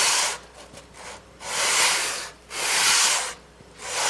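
Edge of a fiddle top section rubbed back and forth by hand across 220-grit sandpaper on a flat board: slow sanding strokes, about one a second, with short pauses between them. The edge is being trued because it is slightly warped and leaves a gap at the joint.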